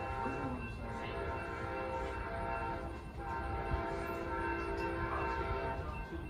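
Distant Amtrak locomotive air horn sounding a multi-note chord in long blasts, with short breaks just under a second in and about three seconds in, the last blast held until near the end. A low rumble from the approaching train runs underneath.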